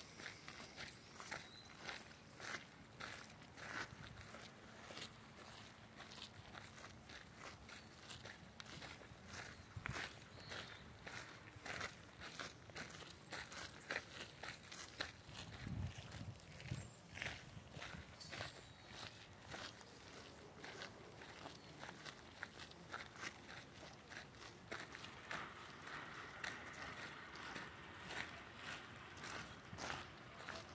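Footsteps of several people walking on a dirt and gravel path, a faint run of soft steps throughout. A brief low thump comes about halfway through.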